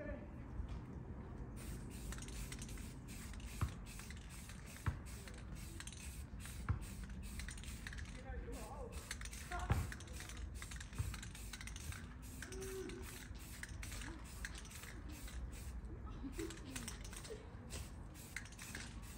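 Rust-Oleum camo aerosol spray paint can hissing in many short repeated bursts as a base coat is sprayed on, with a few sharp clicks in between.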